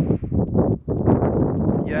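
Wind buffeting a phone's microphone with a low rumble, mixed with a man's halting, hesitant speech sounds.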